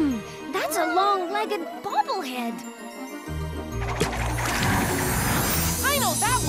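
Cartoon soundtrack music with jingling tinkles, over which a cartoon creature gives short warbling chirps that rise and fall in pitch. The low bass of the music drops out for about three seconds near the start, then comes back.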